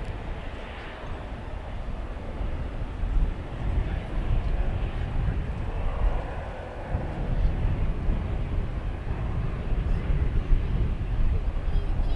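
Airbus A321neo jet engines at takeoff thrust during the takeoff roll: a deep, steady rumble that grows louder about three seconds in.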